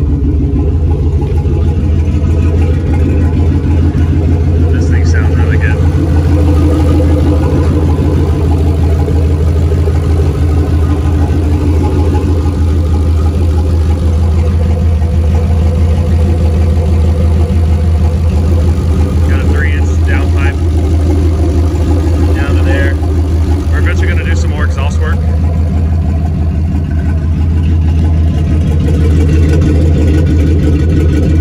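Turbocharged 6.0 LS V8 idling steadily, its level even throughout.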